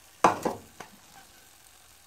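An egg frying in a pan with a faint, steady sizzle, broken about a quarter second in by one sharp knock and then a smaller click.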